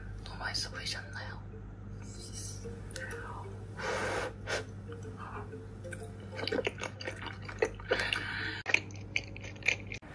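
Eating sounds from an ASMR tteokbokki mukbang played through laptop speakers: chewing and short wet clicks and smacks of someone eating saucy rice cakes, over a steady low hum.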